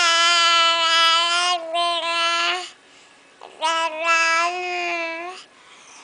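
An infant cooing in long, steady, sung-out vowel sounds: one held for almost three seconds, then a second, shorter one after a brief pause.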